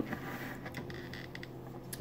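Quiet room tone with a few faint small clicks.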